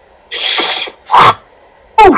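A man sneezing: a hissing breath, then a loud sharp burst, and a second short burst that falls in pitch near the end.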